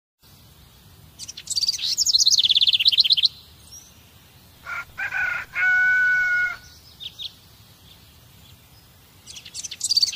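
A songbird's fast, high chirping trill, heard twice (shortly after the start and again near the end), with a rooster crowing in the middle and a few short chirps after it.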